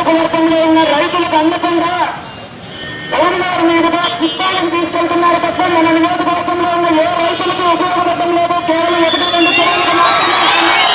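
A man's voice over a loudspeaker, drawn out in long held tones rather than ordinary broken speech, with a pause of about a second after the first two seconds. Near the end, whistles begin to rise from the crowd.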